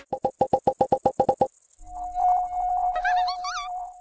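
Synthesized logo jingle: a quick run of about ten short pips, then a held note, with warbling, swooping glides near the end, all over a steady high, rapidly pulsing buzz.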